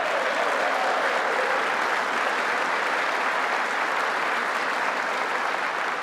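Large audience applauding steadily, a dense even clatter of many hands that holds at one level and ends as the speaker resumes.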